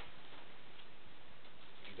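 Steady background hiss at an even level; no distinct sound stands out above it.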